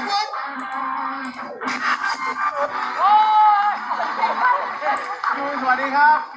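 Rock music with a male voice singing over a band, one long held note about halfway through.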